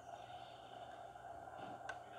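Quiet room tone: a faint steady hum, with one short click near the end.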